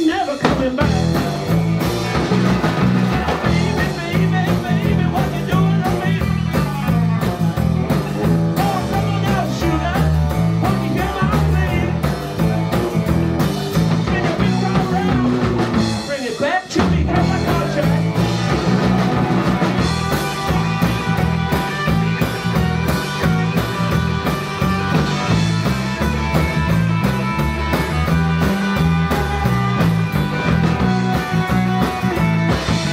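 Live blues-rock band playing: electric guitar over a steady, repeating bass-guitar line and a drum kit, with a brief break in the sound about halfway through.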